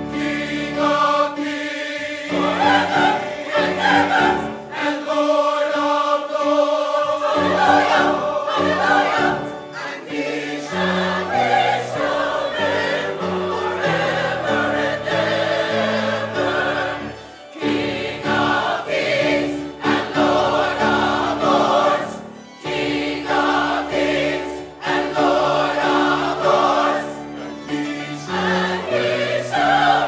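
Mixed church choir of women, men and children singing a slow piece in held, sustained chords, with a steady bass line underneath and brief breaks between phrases.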